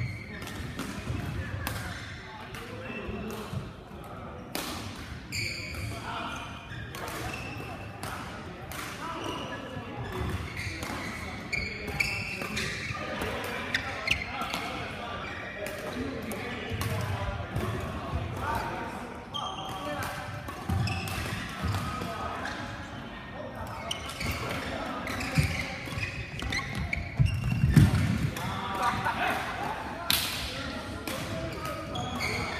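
Badminton doubles rally: repeated sharp racket strikes on the shuttlecock and players' footsteps on the court, with voices and other games going on across an echoing sports hall. Near the end the sound gets louder for a moment.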